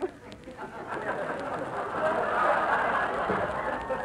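Studio audience laughing, swelling to a peak about two to three seconds in and then tailing off.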